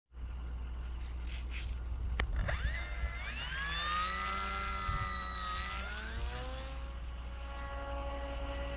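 Flyzone Tidewater RC float plane's electric motor and propeller spinning up to a high whine about two seconds in, rising in pitch again a few seconds later as it powers off the snow, then fading as the plane flies off.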